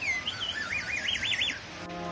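A high warbling whistle, its pitch wobbling rapidly up and down several times a second, then breaking off; music comes in near the end.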